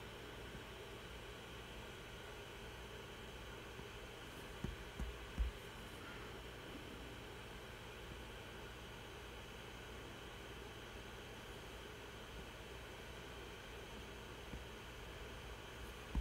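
Faint, steady hiss and hum of a computer running, with three dull, low thumps about five seconds in.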